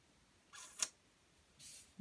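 Mostly quiet, with a faint click about a second in and a brief soft hiss near the end.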